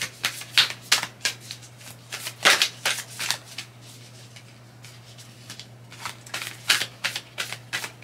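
A deck of tarot cards being shuffled and handled by hand: quick papery snaps and riffles in short bursts, with a quieter stretch in the middle. A faint steady low hum runs underneath.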